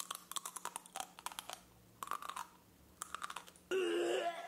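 A person chewing crunchy burnt food: bursts of crunching through the first second and a half, then again about two and three seconds in, followed by a short hummed voice sound near the end.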